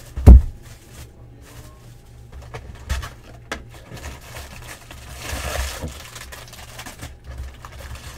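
Cardboard trading-card box being handled and opened: a loud thump just after the start as the box is knocked or set down, then light clicks and cardboard scraping, with a stretch of rustling about five to six seconds in as the flap is pulled back and the packs are reached for.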